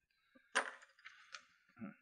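Small plastic model-kit parts being put down with a sharp clink about half a second in, then a lighter click a little later.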